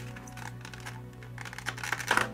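Background music, with small clicks and crinkles of a clear plastic clamshell packaging tray being handled, more of them near the start and the end.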